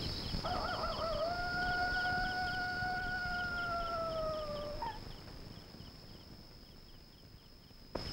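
A dog howling once, in a long howl that wavers at first, then holds steady and sinks slightly before breaking off about five seconds in. Under it, crickets keep up a regular chirping and a high, steady insect trill.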